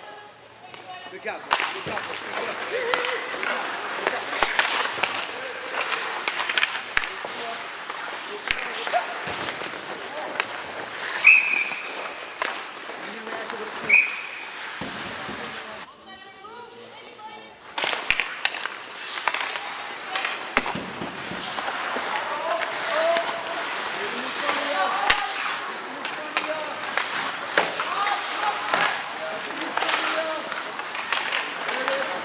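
Ice hockey rink sound: sticks and puck clacking against the ice and boards under players and spectators calling out, with two short referee whistle blasts about eleven and fourteen seconds in.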